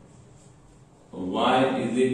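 Quiet room tone, then about a second in a man's voice starts loudly on a long drawn-out syllable.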